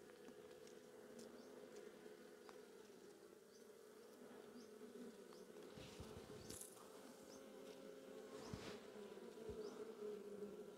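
Faint steady buzzing hum of honeybees on an opened hive's frames, from a colony the beekeeper suspects is drone-laying and then finds queenless. A few soft handling knocks from the frames come about six and eight and a half seconds in.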